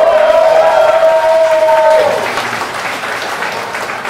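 Audience applauding, with one long held cheering shout over the clapping for about the first two seconds.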